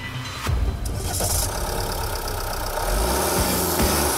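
The Jeep Renegade Trailhawk's 2.0-litre Multijet diesel starting at the push of a button about half a second in, then running, over background music.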